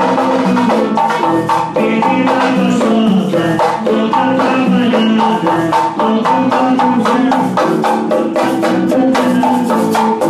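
Live band music played loud, with electric guitar, drum kit and a busy percussion rhythm.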